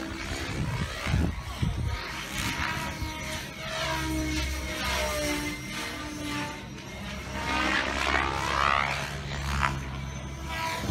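Radio-controlled 3D helicopter flying aerobatic manoeuvres, its rotor and motor whine rising and falling in pitch as it changes speed and direction overhead.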